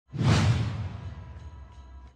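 A whoosh sound effect for a closing logo animation. It starts abruptly just after the start, is loudest almost at once, then fades away over about two seconds, with a few faint ringing notes near the end.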